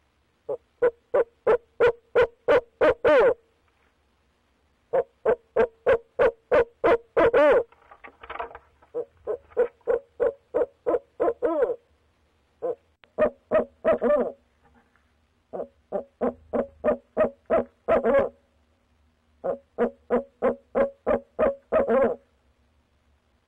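Male barred owl hooting close to the microphone: rapid runs of short hoots, about three or four a second, in six bursts of two to four seconds each with brief pauses between.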